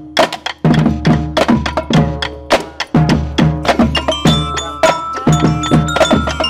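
Makeshift percussion band playing a quick, steady beat: sticks striking upturned plastic buckets, pans and drums, with ringing pitched notes over low drum thuds.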